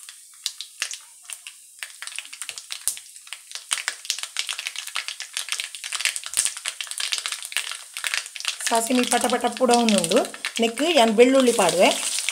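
Cumin seeds spluttering in hot oil in a frying pan: a dense run of small, sharp crackles and pops.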